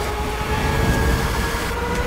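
Movie sound effects: a loud, dense rushing noise with a slowly rising, multi-toned whine over it.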